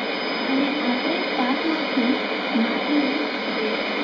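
Trans World Radio shortwave broadcast on 11635 kHz heard through a communications receiver: a faint voice talking under a steady rush of static and hiss, the weak signal of distant shortwave reception.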